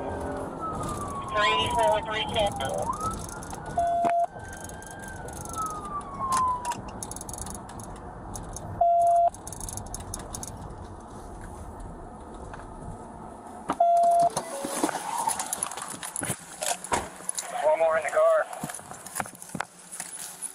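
Police siren wailing, falling then rising and falling in pitch over the first several seconds, heard inside a moving police cruiser over steady road and engine noise. Three short beeps come about five seconds apart.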